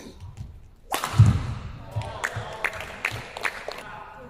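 A badminton racket strikes the shuttlecock with a sharp crack about a second in, followed at once by a heavy thud. A few lighter knocks follow as play ends.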